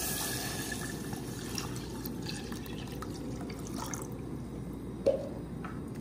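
Water poured from a pitcher into a hot saucepan holding dry-roasted anchovies, a steady splashing pour, with one short sharp knock about five seconds in.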